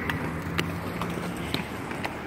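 Inline skate wheels rolling on a concrete path: a steady low rumble, with a few sharp clicks as skates strike the ground, about half a second and a second and a half in.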